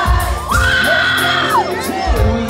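A live pop-rock band playing, recorded on a phone from within the crowd. A high voice slides up about half a second in, holds for about a second, and drops away over the drums.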